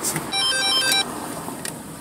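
Mobile phone ringtone announcing an incoming call: a short electronic tune of beeping notes lasting under a second.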